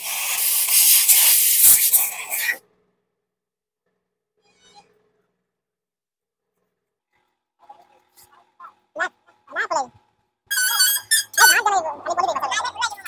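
Compressed-air blow gun blasting air into a motorcycle fuel pump assembly for about two and a half seconds, a loud steady hiss, blowing water out of the pump.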